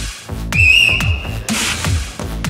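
One blast of a referee's whistle, about a second long, with a slight flutter as it starts, over electronic dance music with a steady kick-drum beat.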